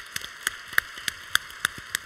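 Applause: many hands clapping in an even patter, with single sharp claps close by standing out about three times a second.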